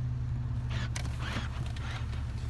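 Steady low hum inside an SUV cabin, with faint whirring and clicks as the GL450's power-folding second-row seat is switched and starts to tip forward.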